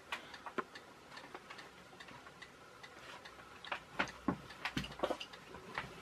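Faint, irregularly spaced clicks and taps: handling noise from fingers holding an infrared LED board against a camera lens while the camera is turned. The clicks come more often in the second half.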